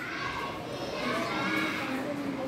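Children's voices chattering faintly in the background, with no one speaking up close.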